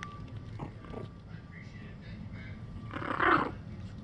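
A young puppy growling briefly, once, about three seconds in.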